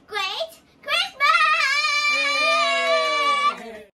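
A child's high voice calls out twice briefly, then holds one long, high, drawn-out note for about two seconds. A lower voice joins the held note partway through, and both stop shortly before the end.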